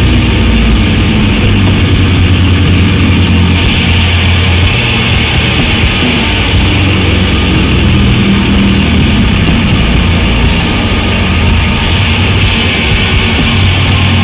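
Loud live heavy music from a heavily distorted electric guitar and drum kit: a dense, unbroken wall of sound with sustained low notes.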